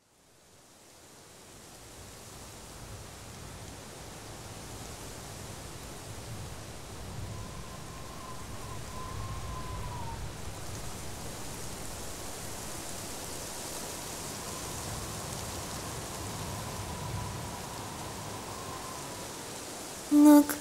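Steady rain ambience, an even hiss of falling rain that fades in from silence over the first couple of seconds. A faint wavering whistle-like tone drifts through it twice in the background.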